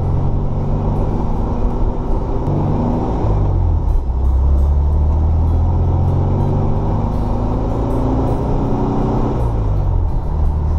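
Freshly rebuilt 1600cc air-cooled flat-four of a 1979 VW Super Beetle pulling under acceleration on a test drive, heard from inside the cabin. The engine note climbs, drops about four seconds in as at an upshift, climbs again through the next gear and falls near the end.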